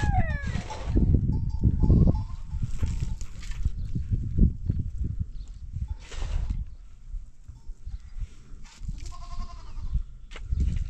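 Long-handled shovel digging and scraping into gravelly soil in repeated strokes. A rooster's crow trails off at the very start, and a goat bleats briefly near the end.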